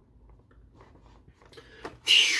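Faint handling of a cardboard collector's box as its front is swung open, with one light click near the end.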